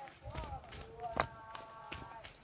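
Footsteps on a dirt path, a few uneven steps, with a person's voice in the background that ends on a steady held note over the last second.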